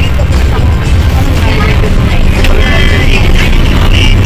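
Low engine and road rumble inside a moving coach bus, mixed with music and voices.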